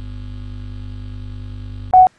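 A steady electronic drone of several held tones under a title graphic, ending in a short, loud beep near the end before cutting off abruptly.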